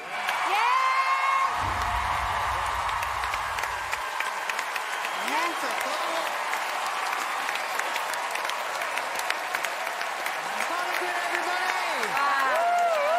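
Studio audience applauding and cheering, dense clapping with shouted whoops rising over it now and then.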